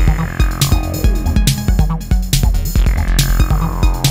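Electro music: a drum-machine beat over a deep bass line, with a synth tone that sweeps downward in pitch twice, once in the first second and again near the end.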